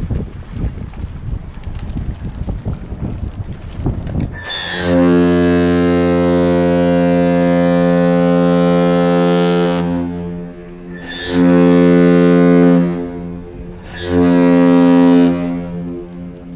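A great lakes freighter's deep horn sounds the captain's salute, one long blast of about five seconds followed by two short blasts. Wind buffets the microphone in the first few seconds before the horn starts.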